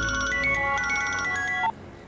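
Mobile phone ringtone: a short electronic tune of clear, steady notes. It cuts off abruptly just before two seconds in, as the call is answered.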